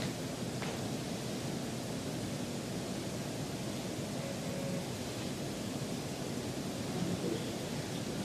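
Steady hiss of room background noise.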